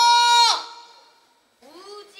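Children singing: a long held note breaks off about half a second in and dies away into the hall, then a new phrase begins near the end with a rising slide into its note.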